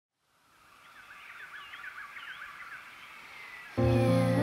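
Forest ambience fading in: many short bird chirps over a steady hiss of rushing water. Just before the end, music comes in suddenly with a loud, sustained chord.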